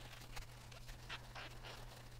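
Faint scrubbing of an alcohol-damp paper towel twisted inside the Morse taper of a steel lathe tailstock barrel, a few soft swishes and scrapes.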